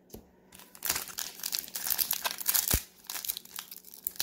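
Foil wrapper of a baseball card pack crinkling as it is handled and torn open, starting under a second in and running in quick rustling bursts, with a brief thump a little after halfway.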